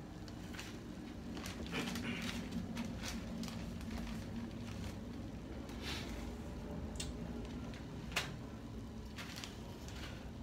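Water boiling in a glass saucepan on a gas burner, a steady bubbling, with scattered light clicks and rustles from a plastic bag of dried herbs being handled.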